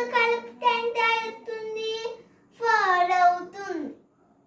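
A young girl singing a short sing-song phrase of long held notes, the last one sliding down in pitch near the end.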